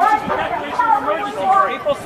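Speech only: people talking, with indistinct chatter.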